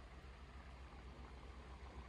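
Faint, steady bubbling of the electrolyte in Trojan T105 flooded lead-acid batteries gassing under an equalization charge, an "ever so slight bubble". It shows the cells are off-gassing hydrogen as they should. A low steady hum runs underneath.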